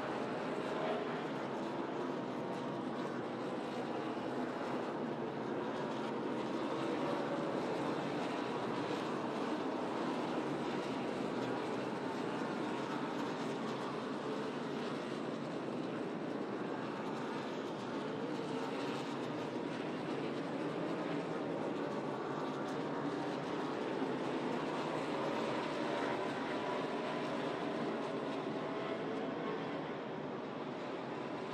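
NASCAR Cup Series stock cars' V8 engines running at racing speed on track: a steady, dense engine drone with the pitch gliding up and down.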